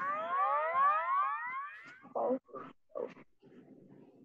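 Cartoon-style presentation sound effect: several layered whistling tones slide upward together for about two seconds as the slide changes, followed by a few short, fainter sounds.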